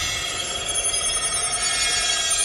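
Synthesized magic-energy sound effect from an animated cartoon: a shimmering, ringing cluster of high electronic tones with faint rising and falling sweeps, marking a sorcerous attack that is draining a character's life force.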